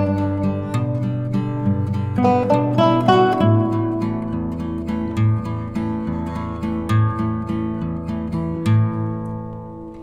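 Instrumental background music of plucked-string notes over a held bass, dying away near the end.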